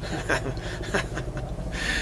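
A man laughing in short breathy bursts, with a longer hissing breath near the end.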